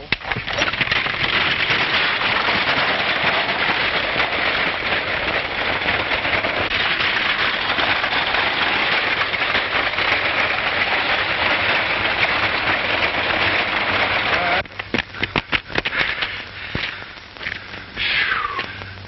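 Horse-drawn wooden wagon rattling and clattering along a dirt road, a dense steady crackle. It cuts off about fifteen seconds in and is followed by a short run of sharp knocks.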